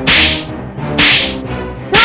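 Dramatic whoosh sound effects, three sharp swishes about a second apart, over a sustained, tense background music bed: the editing stings that punctuate a suspenseful moment in a TV drama.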